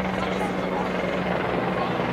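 A helicopter running steadily overhead, heard as a continuous engine and rotor drone with an even low hum.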